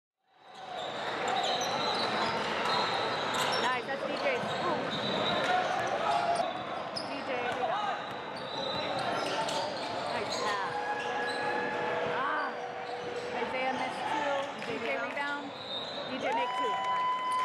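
Live basketball game sound in a gym: a ball bouncing on the hardwood court, sneakers squeaking as players run, and voices of players and spectators echoing in the hall.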